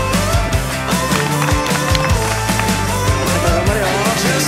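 Background song: a sung melody over a steady drum beat and bass.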